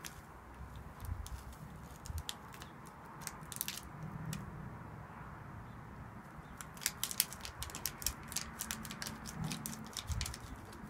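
Light crackles and clicks from a paper sachet being handled and tapped as buffer powder is emptied into a plastic bottle of water. The clicks come thickest in the last few seconds.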